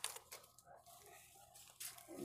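Faint rustling of a thin plastic shopping bag being handled, with a brief sharp crinkle at the start and another near the end.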